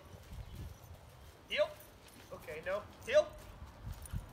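Six-month-old husky puppy giving short, high, falling yelps or whines, about four of them in the second half, as she pulls on the leash.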